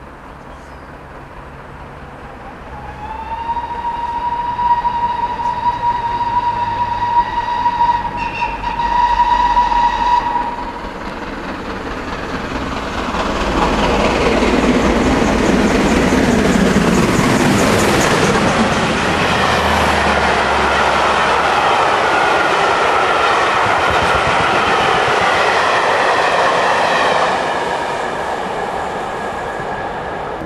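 GWR King class four-cylinder 4-6-0 steam locomotive No. 6024 King Edward I sounds a long, steady whistle of about seven seconds. The engine then passes close by at speed, and its exhaust and wheel noise swell loud as the locomotive and coaches go through. The sound drops away near the end.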